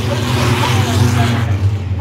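Six-cylinder short-track stock cars passing at racing speed, their engines swelling as they go by and fading about a second and a half in.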